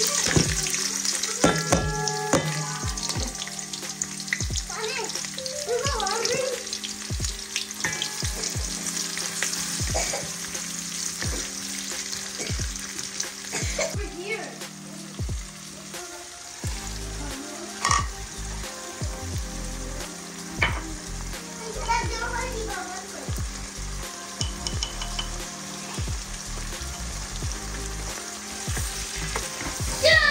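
Chopped onion frying in hot oil in a wok, a steady sizzle throughout, with many short clicks and knocks of utensils against the pan. Raw shrimp is added partway through, and the mix is stirred with a spatula near the end.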